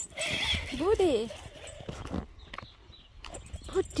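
Domestic cat in a defensive stance toward a dog: a hiss, then about a second in a short yowl that rises and falls in pitch.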